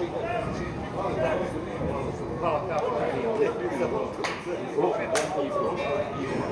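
Men talking indistinctly close to the microphone, with two sharp clicks about four and five seconds in.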